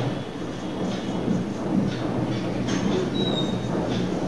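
Marker pen writing on a whiteboard: a few faint scratchy strokes and one short squeak near the end, over a steady background hiss.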